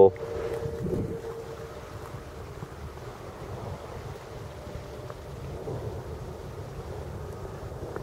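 Wind buffeting the microphone: a faint, steady low rumble. A faint steady hum fades out in the first couple of seconds.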